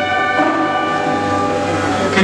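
Brass band music: horns holding a long, loud chord over a low note, with the harmony shifting about half a second in.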